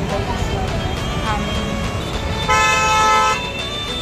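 A vehicle horn sounds once, held for about a second a little past the middle, over steady road rumble and nearby chatter.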